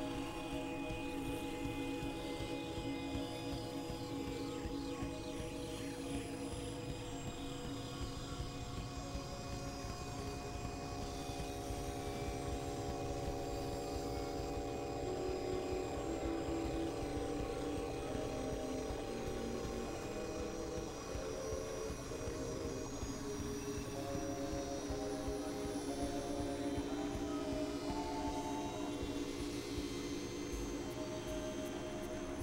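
Experimental electronic drone music from synthesizers: layered sustained tones that step slowly between pitches, over a continuous low, noisy rumble.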